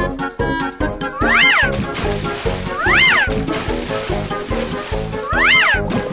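Upbeat cartoon background music, with three high, squeaky calls that each rise and then fall in pitch, spaced about one and a half to two and a half seconds apart.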